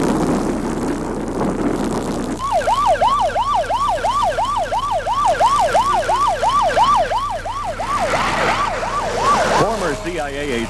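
A rushing roar, then from about two and a half seconds in a siren yelping rapidly, sweeping up and down in pitch about three times a second until just before the end.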